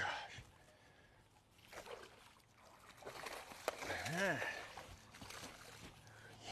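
Water splashing as a hooked largemouth-style bass is fought and landed at the boat, with a short voiced sound about four seconds in that rises then falls in pitch.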